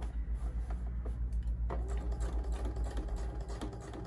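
Computerized sewing machine running a long basting stitch with the zipper foot: a fast, even clicking of the needle mechanism, with a steady motor hum joining in a little under two seconds in.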